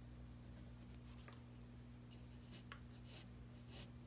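Faint, short scratchy scrapes of a small blade spreading white powder over glue in the wire slot of a wooden lure body, a few strokes mostly in the second half, over a low steady hum.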